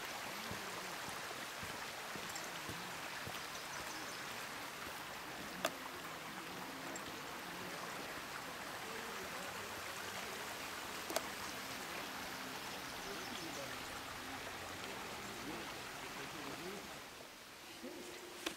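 Steady rush of a shallow, rocky creek flowing, which drops away near the end, with two brief sharp clicks along the way.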